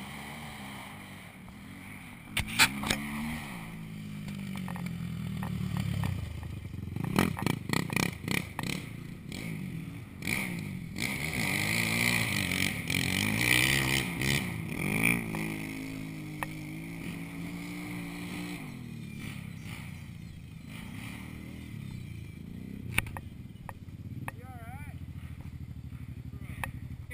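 Four-wheeler engines revving up and down, their pitch rising and falling as they ride, with a few sharp knocks about two and seven seconds in.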